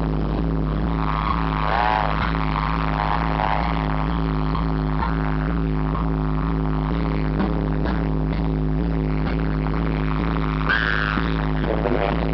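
Live band music with no vocals: a sustained electronic keyboard chord over a low drone and a steady pulsing beat.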